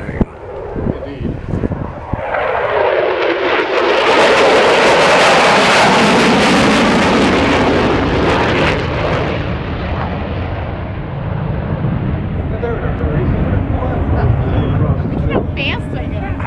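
USAF Thunderbirds F-16 fighter jets passing over: a jet roar that builds from about two seconds in, is loudest and sharpest in the middle as the pitch slides down, then falls away to a lower rumble.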